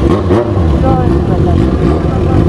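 Yamaha XJ6 inline-four motorcycle engine with a loud aftermarket exhaust, running steadily with a deep rumble as the bike pulls away.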